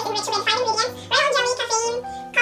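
A woman speaking, reading aloud.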